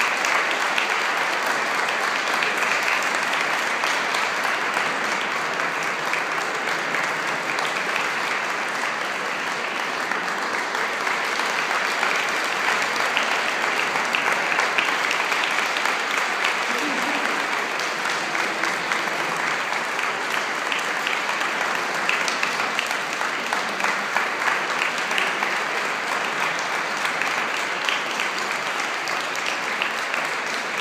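Audience applauding steadily after an orchestral performance.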